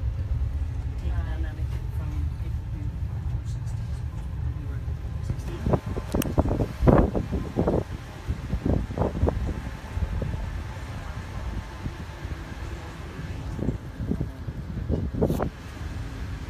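Steady low rumble of a land train running along the road, heard from inside its open carriage. In the middle and again near the end, indistinct voices and knocks come over it.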